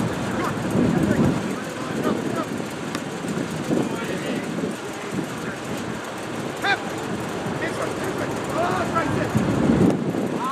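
Distant voices calling out briefly a few times, about seven and nine seconds in, over a steady low rumble.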